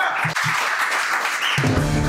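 Hands clapping in applause, then about one and a half seconds in a theme-music sting with a steady beat cuts in.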